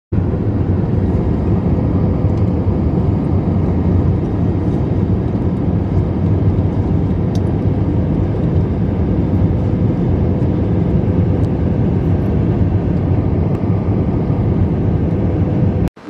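Steady jet airliner cabin noise in flight: the turbofan engines and rushing air heard from a window seat beside the wing. It cuts off abruptly near the end.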